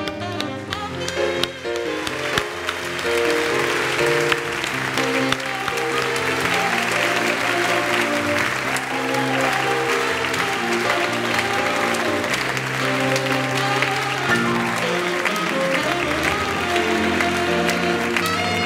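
Audience applauding over instrumental music, the clapping building over the first few seconds and then holding steady.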